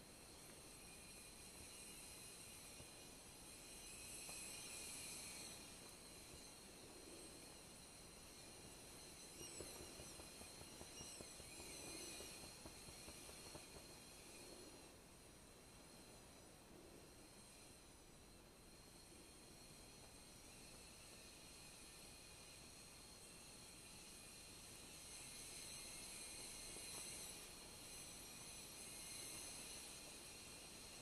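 Near silence with a faint hiss from a stainless-steel stovetop kettle heating water over a fuel-gel flame on a folding camping stove. The hiss swells a little a few seconds in and again near the end.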